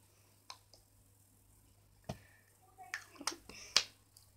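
Light plastic clicks and taps from handling a lipstick and small makeup containers: a couple of single clicks, then a quick cluster of them near the end.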